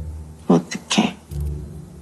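A woman's soft, breathy vocal sounds: two short ones about half a second apart, then a fainter one, over a low steady hum.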